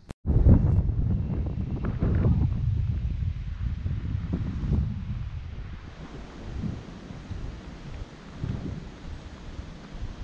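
Wind buffeting the microphone of a handheld action camera: an irregular low rumble that starts abruptly, is loudest in the first couple of seconds and eases off after about five seconds.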